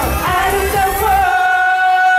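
A male pop singer sings live into a handheld microphone over a backing track. About a second in the backing's low end drops away and he holds one long, steady note.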